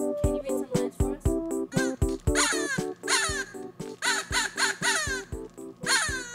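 Electronic keyboard credits music with a steady beat. From about two seconds in, a series of short calls that fall in pitch sounds over it, several times.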